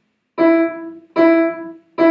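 Upright piano: the same note struck three times, about three-quarters of a second apart, each ringing briefly before the next. It is played with a deliberately stiff, tense staccato touch, the kind to avoid.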